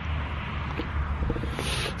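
Outdoor street background noise at night: a steady low rumble with a few faint ticks and knocks.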